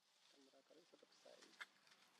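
Near silence outdoors, with a faint low call in the background and a single sharp click about one and a half seconds in.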